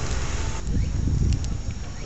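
Low, uneven outdoor rumble picked up by a phone microphone, with a couple of faint clicks about midway.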